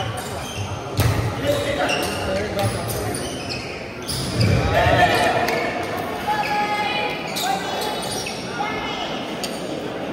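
Badminton rally in an indoor hall: sharp cracks of rackets hitting the shuttlecock and the players' shoes on the court floor, with voices in the background and the loudest stretch about halfway through.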